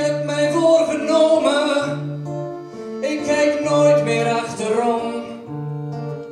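Live band playing an instrumental passage: held accordion notes over strummed acoustic guitar and long upright bass notes.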